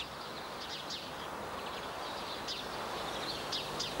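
Faint outdoor ambience: a steady low hiss with short, faint bird chirps now and then.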